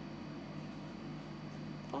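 Steady background hum over faint room noise, with no distinct events.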